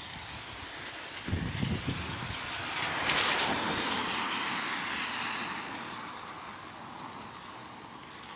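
A car passing on a wet road, its tyres hissing through the water. The hiss swells to a peak about three seconds in, then fades as the car moves away. A few low thuds come just before the peak, a little over a second in.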